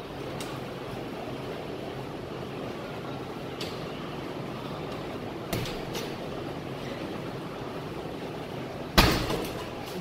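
Strikes landing on a hanging heavy punching bag: a light hit a few seconds in, two quick thuds past the middle, and one loud heavy thud near the end, over a steady background hiss.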